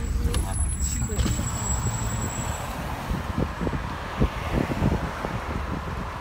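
Car interior while driving: a steady low rumble of engine and road noise heard inside the cabin.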